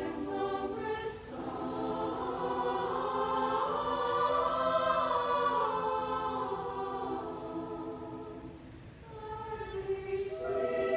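Soprano-alto choir singing in a large hall: a phrase ends with a sibilant 's' about a second in, then the massed voices swell to a peak in the middle with their pitches sliding up and back down, and fade before a new phrase begins near the end.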